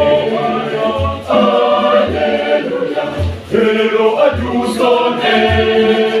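Mixed choir singing in parts, accompanied by a pair of tall hand drums beating out a steady rhythm of low thumps.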